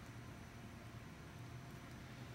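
Faint steady room tone with a low hum and a soft hiss.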